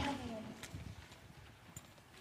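Faint footsteps and shuffling of several people walking on a wooden floor, with a few light knocks.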